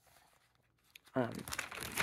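Crinkling, rustling handling noise close to the microphone, starting with a spoken "um" a little over a second in; the first second is nearly quiet.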